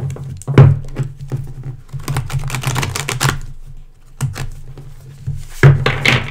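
A deck of tarot cards being shuffled by hand: a rapid run of papery clicks and slaps, with stronger slaps about half a second in and near the end.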